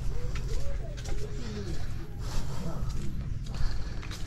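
Birds calling in short, bending calls, mixed with faint voices, over the low rumble of someone walking with the camera.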